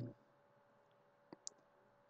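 Near silence with two faint clicks in quick succession about a second and a half in, typical of a computer mouse being clicked.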